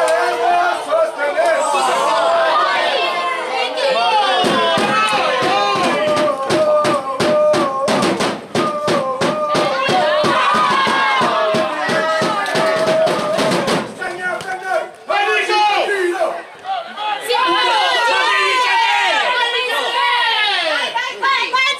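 Group of voices singing a chant in unison, with held notes. A steady beat of about three strokes a second runs under it from about four to fourteen seconds in.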